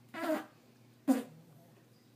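A pug passing gas: two short farts, the second, about a second in, sharper and louder, with a brief low buzz after it.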